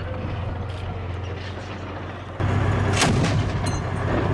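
Tracked armoured vehicles' engines rumbling steadily, with a single sharp shot about three seconds in.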